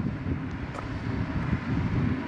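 Wind buffeting the camera's microphone outdoors, a fluctuating low rumble.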